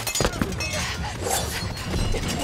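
A quick run of sharp clinking and shattering impacts, with a bright ringing after some of the strikes.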